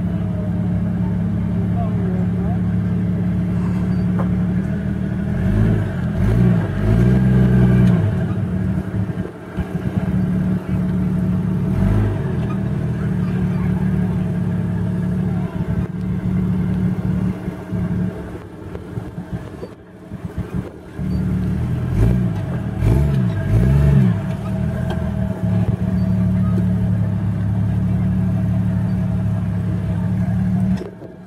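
Lifted Jeep Wrangler Rubicon's engine running and revving under load as it climbs onto and crawls over two wrecked cars, with bursts of revving about six seconds in and again around twenty-two seconds.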